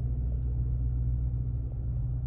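Steady low rumble of a car heard from inside the cabin, with the engine and air conditioning running.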